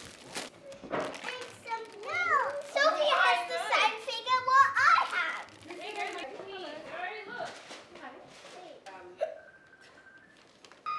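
Young children talking and calling out in high, sliding voices, loudest from about two to five seconds in.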